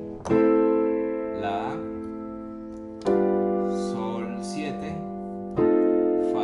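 Piano chords played slowly, three struck about two and a half seconds apart and each left to ring and fade: the descending four-chord Andalusian cadence in A minor, with dominant-seventh chords on G and F.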